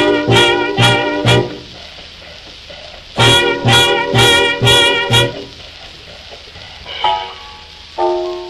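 Swing band recorded on a 1943 78 rpm shellac disc: the ensemble, led by trumpet and saxophones, plays short punched chords in two groups, about four hits, a pause, then five more, with a lone note about seven seconds in. A steady surface hiss from the old record runs underneath.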